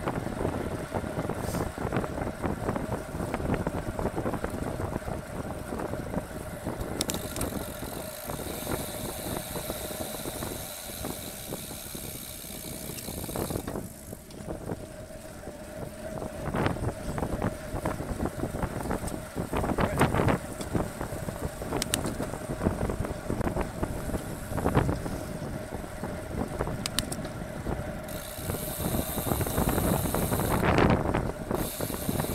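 Wind rushing over a bike-mounted camera's microphone, mixed with tyre and drivetrain noise from a road bike ridden in a group at around 35–40 km/h. A few short knocks come through, about 17, 20, 22 and 27 seconds in.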